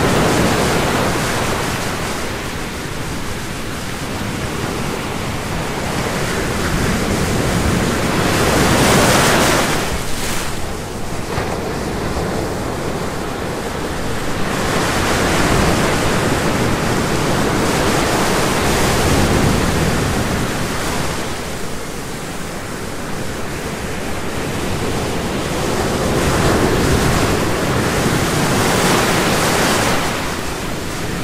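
Ocean surf: a steady rushing noise that swells and eases every several seconds as waves break.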